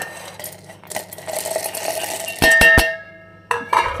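Roasted, peeled peanuts poured from a steel plate into a stainless-steel mixer-grinder jar: a rattling slide of nuts, then three sharp, ringing metal clanks as the plate knocks against the jar.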